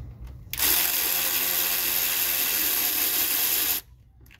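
Cordless electric ratchet whirring steadily as it spins a bolt on the engine's valve cover. It starts about half a second in and cuts off suddenly just before the end, after about three seconds of running.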